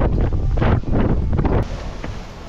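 Strong wind buffeting an action camera's microphone in uneven gusts, heavy and low, on an exposed mountain ridge. It cuts off abruptly about one and a half seconds in, leaving a quieter, steadier hiss.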